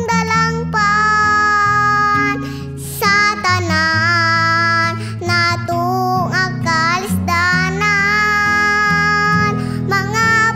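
A young girl singing a Cebuano worship song in long, held notes over an instrumental accompaniment.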